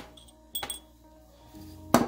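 Background music with a few sharp clicks and clinks of hard objects handled on a wooden board, the loudest near the end.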